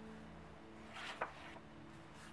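Faint paper rustle of a sketchbook page being turned, a brief soft swish about a second in, over a faint steady musical drone.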